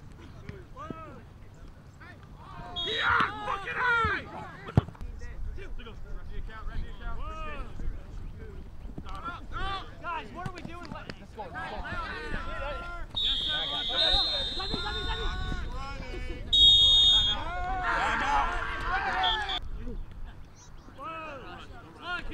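Men shouting and calling out during a flag football play, loudest about three seconds in and again near the end. A referee's whistle sounds twice in the second half, a shrill steady blast each time.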